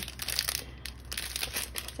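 Clear plastic sticker packet crinkling as it is handled in the hands, a run of irregular crackles.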